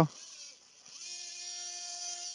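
Surgical oscillating bone saw running with a steady high whine, starting about a second in, while its blade cuts the patellar bone block of a quadriceps tendon graft.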